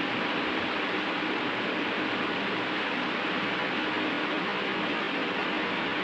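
Steady background hiss with a faint low hum and no other events.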